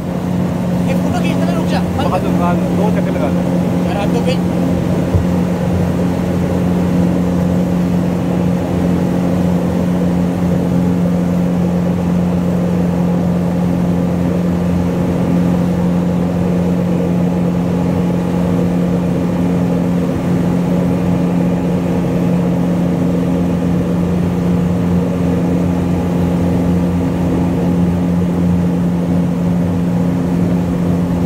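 Motorboat engine running at a steady, unchanging speed, a constant low drone over the rush of river water past the hull.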